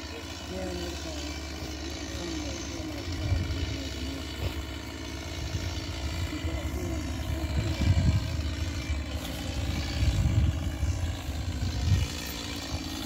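A chainsaw running steadily, with loud low rumbles about three seconds in, around eight seconds in, and again near the end.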